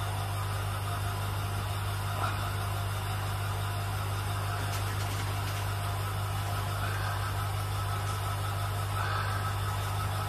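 Aquarium pump running with a steady low electric hum that does not change.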